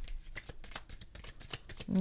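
A deck of tarot cards being shuffled by hand: a quick, continuous run of light card clicks.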